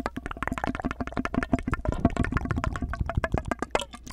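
Rapid mouth clicks and pops made through a clear tube held to the lips, about ten a second, each pop with a short hollow pitched ring.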